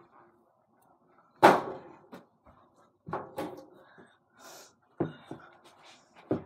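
A small ball knocking against an over-the-door mini basketball hoop's backboard and the door it hangs on, and bouncing: one loud bang about a second and a half in, then two quick pairs of knocks around three and five seconds in.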